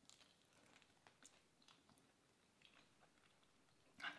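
Very faint chewing as two people eat pizza: scattered soft mouth clicks over near silence.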